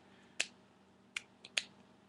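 Four short, faint clicks in a pause, the loudest about half a second in and three more close together after a second.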